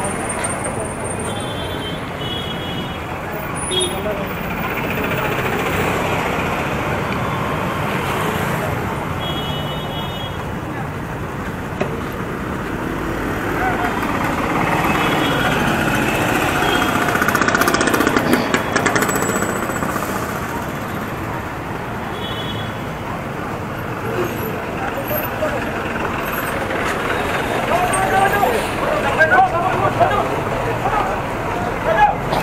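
Busy city street traffic: a steady wash of car, scooter and bus engines and tyres, with several short horn beeps scattered through and people talking around.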